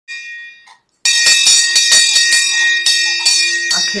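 Wooden-handled handbell: one short ring, then about a second in it is shaken steadily, its clapper striking about four to five times a second while the bell rings on, dying away near the end.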